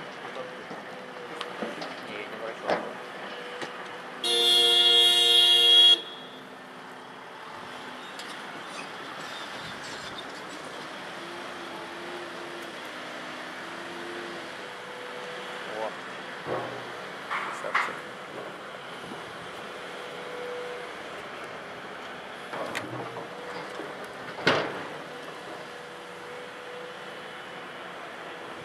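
A heavy machine's horn sounds once for about two seconds in a loading cycle, typical of the signal to a loaded dump truck to pull away. It comes over the steady running of a Volvo EC700B LC crawler excavator's diesel, and a few sharp clanks of the bucket on rock follow later.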